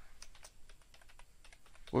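Computer keyboard typing: a run of faint, irregular key clicks as a short phrase is typed into a spreadsheet cell.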